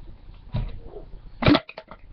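A soft knock, then a sharp plastic click about one and a half seconds in followed by a few small ticks: hands handling a plastic fruit-infuser water bottle and its lid.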